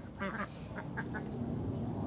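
Domestic ducks quacking: a quick cluster of short calls about a quarter second in, then a few scattered softer ones.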